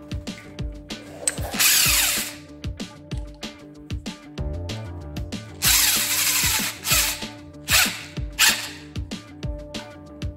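Power drill run in short bursts, spinning a homemade rivet-puller attachment in its chuck: one burst about a second and a half in, a longer one about halfway through, then three brief blips. The first two bursts fall in pitch as they run.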